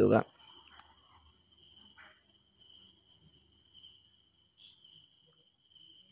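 A faint, steady, high-pitched trill in the background, several thin unbroken tones holding level with no rhythm or change.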